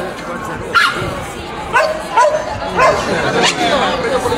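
A dog barking, about five short, high-pitched barks spread over about three seconds, over crowd chatter.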